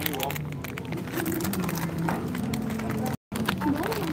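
Retail store background of faint music and distant voices, with light crinkling from a plastic-wrapped notebook being handled. The sound cuts out completely for a moment about three seconds in.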